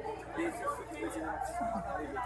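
Several people talking over one another in background chatter, with no single clear voice, over a steady low hum.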